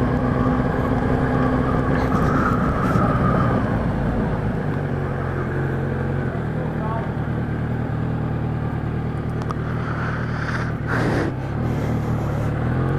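Kawasaki Z1000 inline-four engine with an aftermarket 4-into-1 exhaust, pulling away in third gear and riding at low revs with a steady exhaust note, quiet enough that it hardly seems to have the exhaust.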